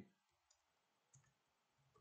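Faint computer keyboard keystrokes: a few light, separate clicks as a word is typed, otherwise near silence.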